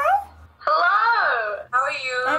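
Women's voices calling out long, drawn-out greetings that slide up and down in pitch, at the start of a laptop video call.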